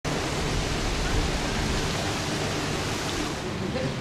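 Steady rush of fountain water splashing into its basin, with faint voices behind it near the end.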